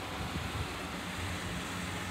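Distant engine of a classic car driving slowly away, a low steady hum under wind noise on the microphone.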